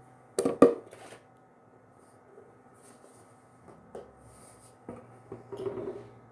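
Objects being handled and set down on a bathroom countertop: a few sharp knocks about half a second in, then softer taps and rustling near the end.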